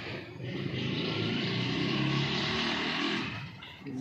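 A motor vehicle's engine running close by, a steady mechanical rush that swells about half a second in and fades away near the end.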